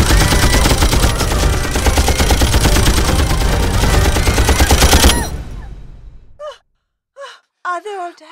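Machine gun firing one long, rapid, continuous burst for about five seconds, then dying away. A few short gasps and spoken words follow near the end.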